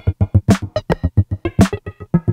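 Electronic dance music played live on a Eurorack modular synthesizer and an Elektron Analog Rytm drum machine: a fast sequenced pattern of short notes, about eight a second, over deep kick-like thumps, with two bright drum hits about half a second and a second and a half in.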